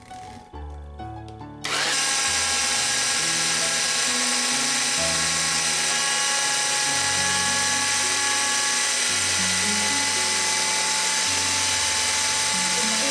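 Electric blender motor switching on about two seconds in and running at a steady high speed, grinding roasted sesame seeds and peanuts into a paste. Background music plays underneath.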